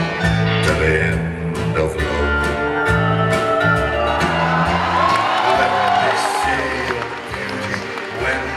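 Live band playing an instrumental passage: plucked acoustic guitar over a steady bass line, with a violin line that glides in pitch about halfway through.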